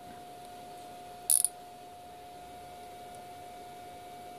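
A short burst of metallic clicking about a second in, as a steel socket is fitted into a digital micrometer and its spindle or ratchet stop is worked, over a faint steady electrical whine.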